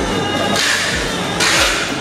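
Background music with a steady beat and held tones, with a hissing swell in the middle.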